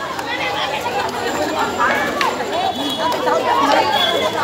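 Several people talking at once: overlapping chatter of a small crowd.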